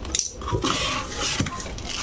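Rustling and crinkling of honeycomb kraft-paper wrapping against a cardboard box as hands grip a package inside it, with a few sharp clicks.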